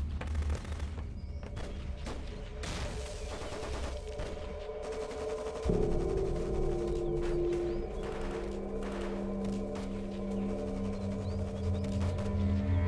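Scattered gunfire, many sharp irregular shots of a distant firefight, under a film score of sustained low notes that shift about six seconds in.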